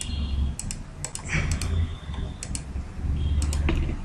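Computer keyboard keys being pressed, with irregular clicks a few times a second, over a low steady hum.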